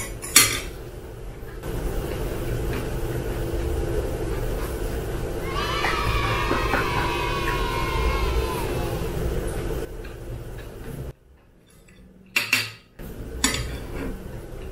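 Metal chopsticks and a spoon clinking against a ceramic bowl at the start and again near the end. Between them is a steady hum, with a wavering, pitched sound lasting a few seconds in the middle, and then a short near-silent gap.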